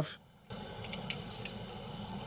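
Faint handling sounds as Teflon tape is wrapped on an airbrush quick-connect coupler's thread and the coupler is fitted. A few light crinkles come about a second in, over a steady low hum that starts about half a second in.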